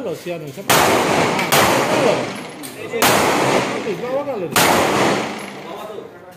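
Four handgun shots at an uneven pace, each one sudden and loud and trailing off in a long echo.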